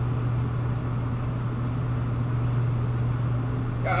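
Steady low hum with a faint hiss over it, unchanging.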